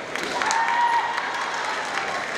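A kendo fencer's long, held kiai shout, starting about half a second in and lasting under a second, over the steady noise of a crowded sports hall. A short sharp click comes about half a second in.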